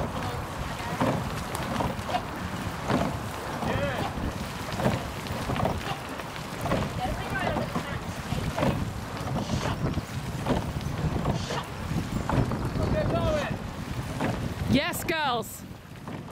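Wind rumbling on the microphone beside a racing rowing eight, with the crew's oars working the water and faint, short knocks about once a second. Scattered faint shouts come through, and a louder pitched shout rises and falls near the end.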